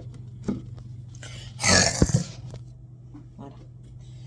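Handling noise as the phone is moved and set down: a loud rustle about two seconds in, a sharp knock right after it, and a few light ticks, over a steady low hum.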